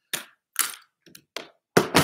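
Objects being handled on a desk: four or five short, sharp clicks and knocks about half a second apart.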